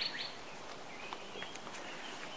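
Quiet outdoor garden ambience with a few faint, brief bird chirps about a second in.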